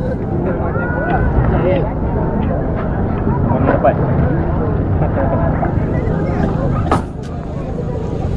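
Several people talking in the background over a steady low rumble, with a sharp click about seven seconds in.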